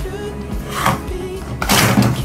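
A pop song plays, and near the end comes a sudden loud clatter lasting about a third of a second: a kick scooter hitting the plywood ramp as its rider falls.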